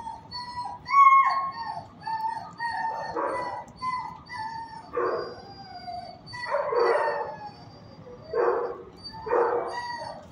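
Dogs in shelter kennels whining in high, wavering tones, with a short bark every second or two from about three seconds in.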